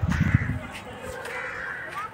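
Birds calling outdoors with harsh, caw-like cries, over a brief low rumble in the first half-second.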